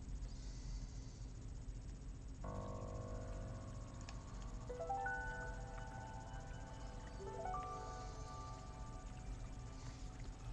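Soft background music of sustained chords begins about two seconds in and changes chord twice. Under it there is a low steady hum and a few faint clicks from plastic Lego bricks being handled.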